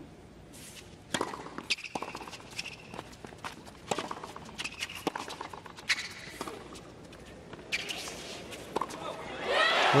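Tennis rally on a hard court: sharp ball strikes and bounces going back and forth about once a second, with brief squeaky tones between the hits. Crowd noise swells just before the end as the point finishes.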